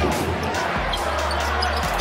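Basketball being dribbled on a hardwood court, over the steady noise of an arena crowd.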